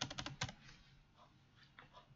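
A quick run of about six computer keyboard keystrokes in the first half second, followed by a few faint key clicks.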